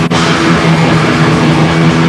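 A black metal band plays live, loud and dense, with distorted electric guitar over the full band. There is a momentary break in the sound just after the start.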